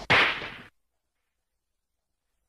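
A single short swish, the last sound of the hip-hop track, fades out within the first second. Dead silence follows.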